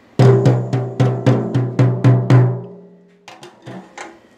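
A drum struck in a quick, even run of about nine beats, roughly four a second, each leaving a low pitched ring. A few softer hits follow near the end.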